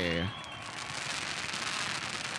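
Victory-lane pyrotechnic spark fountains going off: a steady spray of noise that follows the end of a man's shout in the first moment.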